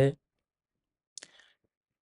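A man's speech stops just after the start, then a pause of dead silence broken about a second in by one short mouth click with a faint hiss after it.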